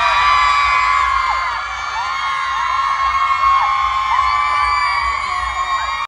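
A large concert crowd cheering and screaming after the song ends, many high voices overlapping in a steady din.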